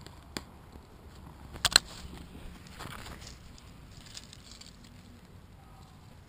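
A few sharp knocks: a light one about half a second in and a louder double knock near two seconds, followed by faint rustling.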